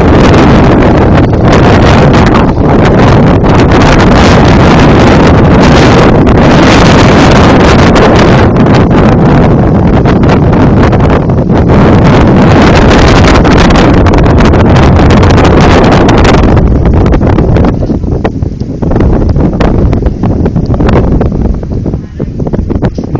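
Heavy wind buffeting the microphone, loud enough to overload the recording, with gusts coming and going; after about sixteen seconds it eases and turns patchier.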